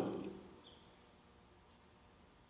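A man's last word trails off in the first half second, then near silence: room tone with a couple of faint, short, high chirps.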